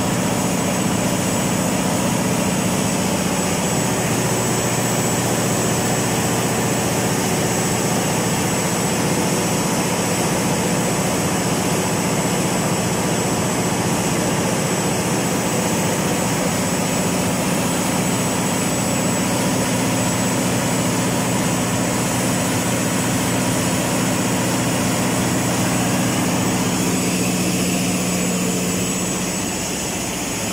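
Freshly overhauled Cummins KTA50 V16 diesel generator engine running steadily: a deep, even drone with a low hum. It gets a little quieter near the end.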